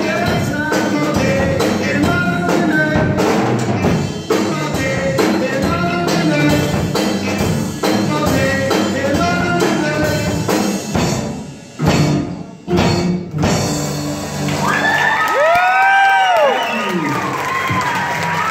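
Rock band playing: several electric guitars and a drum kit with a singer, breaking off in two short stops partway through. The band then holds a final sustained ending with a note sweeping up and back down, while audience applause and cheering begin near the end.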